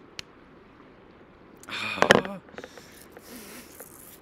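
A man's short breathy laugh through the nose about two seconds in, followed by quieter breathing, with a few faint clicks before it.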